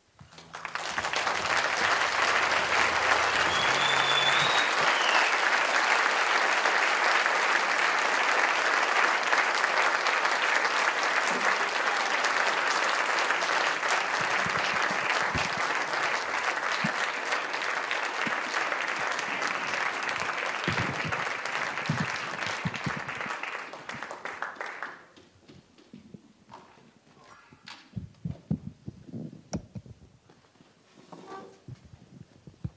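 Audience applauding at the end of a song: the clapping swells about a second in, holds steady for over twenty seconds with a brief whistle about four seconds in, and dies away at about 25 seconds. After it come a few scattered knocks and clunks from the microphone stand being handled on the stage.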